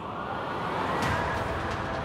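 A rising whoosh sound effect for an on-screen graphics transition, swelling to a peak about a second in, over background music.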